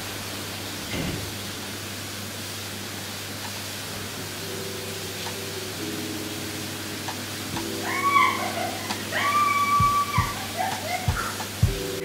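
Heavy tropical rain pouring down, a steady even hiss with water running off the roof edge. About halfway through, soft music comes in over the rain, with sustained melody notes and a few soft low beats.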